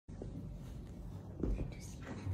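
A woman whispering softly to a baby, with a soft thump about one and a half seconds in.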